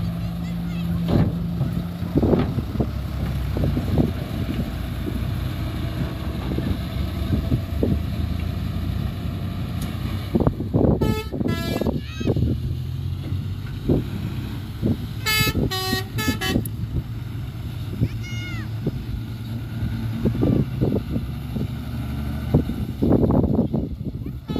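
Fuso dump truck's diesel engine running under load while tipping soil and moving off with the bed raised. Short horn toots sound about ten seconds in and again around fifteen to sixteen seconds.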